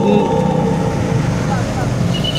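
Road traffic, mostly motorcycles riding past, with a steady low engine rumble.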